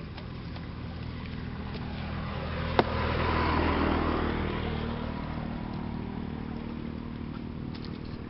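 A motor engine hums steadily, swelling louder around the middle as if passing by and then fading away. A single sharp click sounds just before the loudest part.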